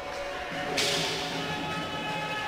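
Arena crowd noise during a roller hockey match, with a steady held note that sets in about half a second in and a hiss that swells just after.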